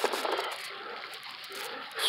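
Clear plastic bag rustling and crinkling as it is handled, a soft irregular noise.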